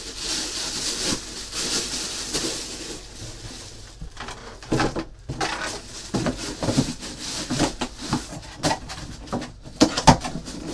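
Plastic packaging crinkling and rustling, then a run of irregular knocks and bumps from cardboard packaging and items being handled on a table. The loudest knock comes right at the end.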